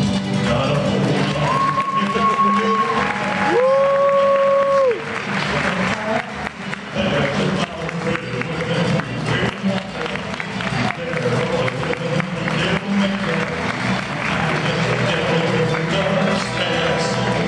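Music playing loudly with an audience applauding and cheering. The clapping thickens after about five seconds, just after two long held notes in the music.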